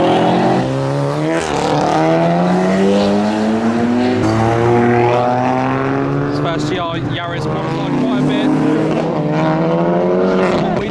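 Modified car engines accelerating hard as the cars pull away, revving up through the gears: the pitch climbs, drops back at each gear change, and climbs again several times.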